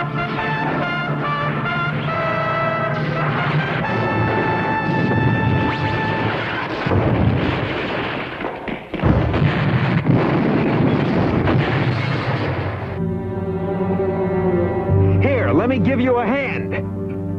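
Cartoon soundtrack: orchestral action score with brass. Loud noisy blasts of explosion-like effects cover it from about seven to thirteen seconds in, with a short break near nine seconds, before the music's held chords return.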